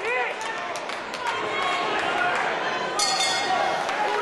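Spectators' voices shouting around a boxing ring, and about three seconds in a short bright metallic ring: the bell ending the round.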